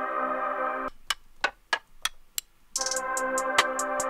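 A beat playing back: a sustained synth chord cuts out just under a second in, leaving only crisp hi-hat ticks, then comes back near the three-second mark with the hi-hats running over it.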